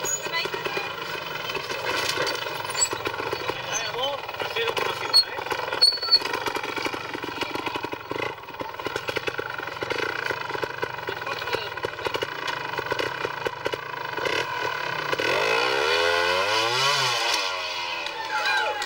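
Two-stroke trials motorcycle engine running at low revs as the rider climbs over rock, with a couple of sharp knocks about five and six seconds in. Near the end the engine revs up and falls back.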